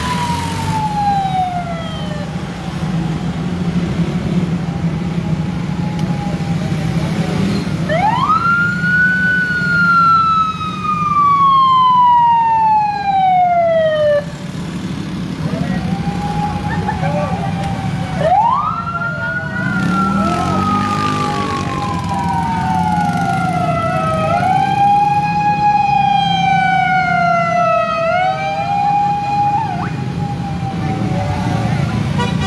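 Vehicle sirens in a moving motorcade, wailing in slow sweeps: each climbs quickly and falls away over several seconds, with shorter overlapping sweeps near the end, over the steady rumble of vehicle engines.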